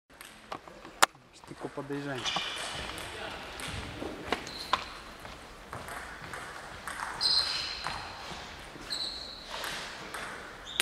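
Table tennis balls clicking sharply off bats and tables, scattered and irregular, ringing in a large hall. The loudest click comes about a second in, and there are two brief high squeaks later on.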